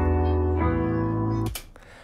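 A pop song's piano intro playing back: sustained major-key chords that sound upbeat, changing chord about half a second in and stopping abruptly at about a second and a half.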